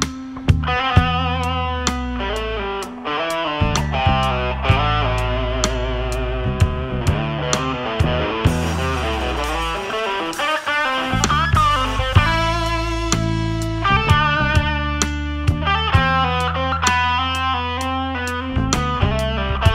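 Rock band playing an instrumental passage: distorted electric guitar over drums, bass and keyboards, with a steady drum beat and a moving bass line.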